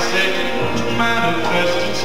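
A live gospel band playing, with an electric bass guitar under sustained chords.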